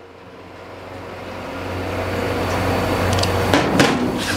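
A steady low rumble of background machine or traffic-like noise that swells over the first couple of seconds and then holds, with a few faint clicks near the end.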